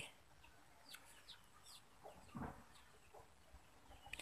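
Near silence, with a few faint, short bird calls in the background, the clearest a little past halfway.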